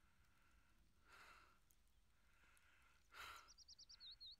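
Near silence, with a man's faint breathing and sighs, about a second in and again near three seconds. Near the end a small bird starts a quick run of high chirps.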